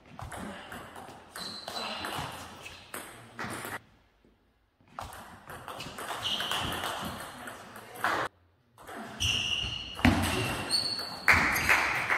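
Table tennis rally: the ball clicking sharply off the bats and table in quick runs, with short pauses between points.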